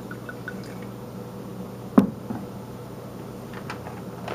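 Red wine poured from a large glass bottle into a wine glass, glugging quickly and rising slightly in pitch before stopping about half a second in. A single sharp knock comes about two seconds in, then a few faint ticks.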